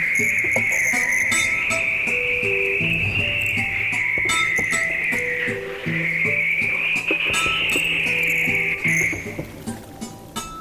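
Film soundtrack: a continuous high-pitched, insect-like chirring hiss that wavers slightly in pitch, briefly dipping about halfway through, over sparse plucked notes and faint clicks. The hiss stops shortly before the end.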